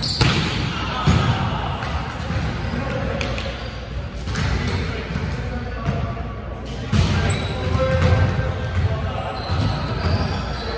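Volleyball struck hard at the net right at the start, then several more hits and bounces on a hardwood gym floor, amid players' indistinct shouts and chatter echoing in a large gym hall.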